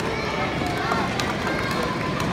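Steady chatter of many voices in a busy gymnasium, with a few light clicks of plastic speed-stacking cups being stacked and down-stacked.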